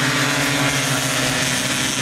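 Small racing minibike engines running steadily at high revs as several bikes pass close together, a constant high-pitched drone.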